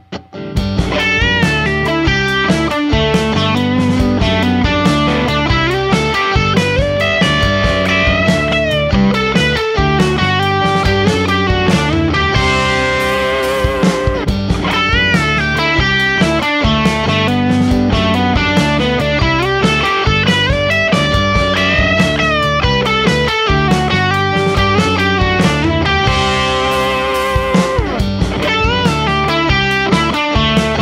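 Stratocaster electric guitar played through an amp on its bridge pickup, in continuous lead lines with string bends. The first clip is on a Klein Jazzy Cats set and a later clip is on a Lollar Blond set.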